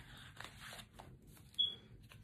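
Soft rustling and sliding of paper and card as a handmade paper journal is handled and its pages moved. There are a few light clicks, and a brief high squeak about one and a half seconds in.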